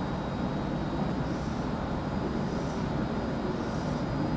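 Steady low background rumble of the room, with a few faint scratchy strokes of a marker being drawn across a whiteboard.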